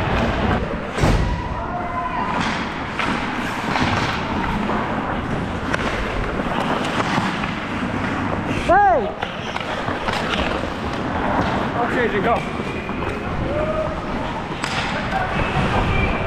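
Ice hockey game sound from the player's helmet camera: skate blades scraping and carving the ice, scattered stick clacks and knocks, and players calling out across the rink. A short, loud call rises and falls about nine seconds in.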